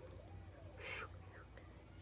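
A woman's faint voice, mumbling or whispering under her breath, with a short hiss about a second in.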